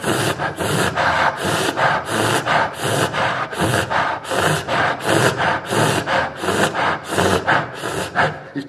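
A man panting rhythmically into a close microphone, about three breaths every two seconds, imitating a dog panting.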